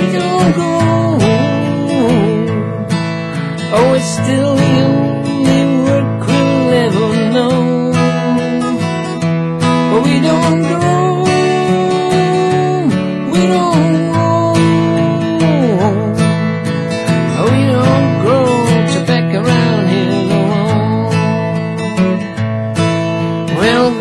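Acoustic guitar strummed steadily in a country song, with a wavering melody line above it.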